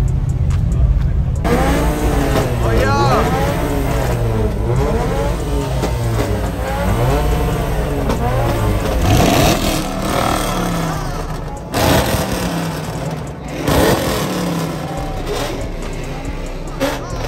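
A Nissan 350Z's V6 engine running at low revs as the car pulls off, cut short after about a second and a half. Then many voices of a crowd talking over each other.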